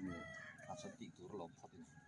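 A rooster crowing faintly, the crow trailing off about half a second in, followed by faint scattered voices.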